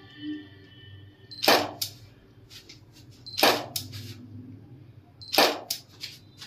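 A camera shutter firing three times, about two seconds apart. Each loud click is followed by a softer click or two, and a short faint high beep comes just before each shot.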